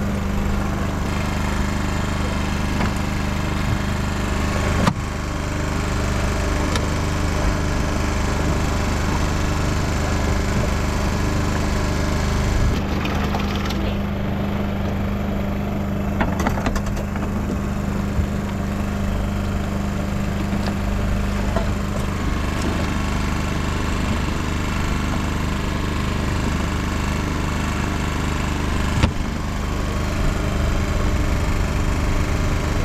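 A small engine running steadily on a fishing boat, with a constant low hum, and a few sharp knocks on the boat about five seconds in, around the middle and near the end.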